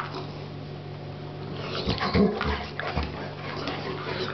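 Two dogs playing at close range, with scuffling clicks and a short dog vocalisation about halfway through, the loudest moment.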